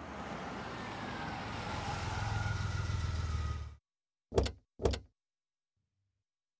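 A car drives up, its engine noise growing louder, then cuts off suddenly a little before four seconds in. Two car doors then slam shut about half a second apart.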